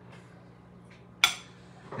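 A single sharp clink of a metal utensil against a dish or the metal muffin tin a little over a second in, ringing briefly, over a faint steady low hum.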